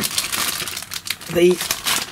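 Plastic packaging crinkling as it is handled, a dense run of small irregular crackles.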